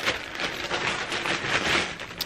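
Clear plastic packaging of a pack of baby yarn crinkling and rustling continuously as a ball of yarn is pulled out of it.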